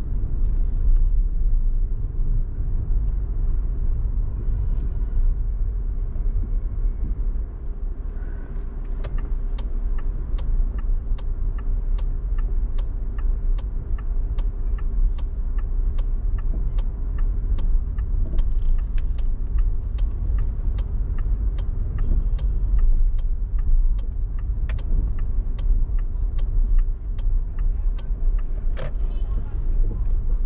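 Steady low car rumble and road noise heard from inside a moving car. From about nine seconds in, an even ticking of about two clicks a second joins it and stops near the end, typical of a turn-signal indicator.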